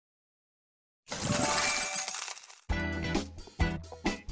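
Logo intro sound effect: after about a second of silence, a bright shimmering rush with a glassy, tinkling edge, then a run of short pitched hits, each with a deep bass under it.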